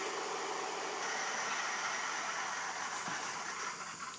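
Steady, fan-like whirring hiss from the switched-on RC tank control electronics, easing off slightly near the end.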